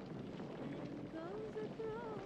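A quiet background with a faint voice. In the second half, a soft voice rises and falls in pitch.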